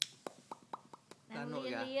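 A person clicking their tongue, a quick run of about eight short pitched pops in the first second, then a voice calling "Lia" in a high sing-song.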